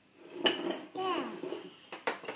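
A sharp clink of tableware on the wooden table about half a second in and another near the end, with a toddler's short high-pitched vocal sounds in between.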